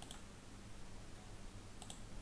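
Faint computer mouse clicks over low room hiss: one click just after the start and two quick clicks near the end.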